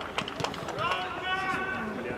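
Men calling to each other across a football pitch, with one drawn-out call about a second in. A couple of sharp knocks come in the first half second.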